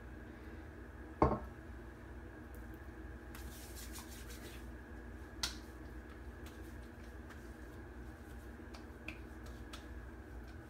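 Faint hand sounds of aftershave being applied: one sharp knock about a second in, as from the glass bottle being handled, then soft rubbing and a few light ticks as the hands work it over the face, against a steady low room hum.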